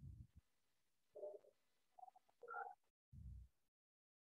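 Near silence with a few faint, brief sounds: one about a second in, another at about two and a half seconds, and a low thud just past three seconds.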